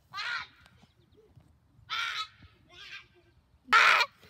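A boy's short shouts, four in all, the last and loudest near the end.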